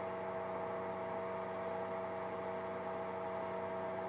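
A steady, even hum made of several held tones, unchanging throughout.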